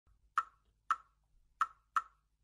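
Four sharp percussive clicks, each with a short ring at the same pitch and unevenly spaced, opening the trailer's soundtrack.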